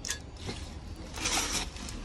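Plastic wrapping and tape on a motorcycle exhaust header crinkling and rustling as the header is handled over a cardboard box, loudest about a second and a half in.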